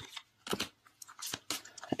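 Tarot cards being handled as the next card is drawn: a few soft clicks and rustles of card stock, scattered through the pause.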